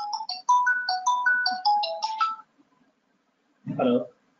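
Phone ringtone playing an incoming-call melody of quick, clean notes, which stops about two and a half seconds in when the call is answered.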